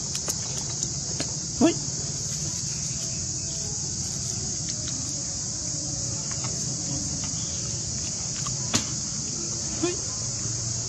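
Steady high-pitched insect drone. It is broken by a short rising squeak about one and a half seconds in and a sharp click near the end.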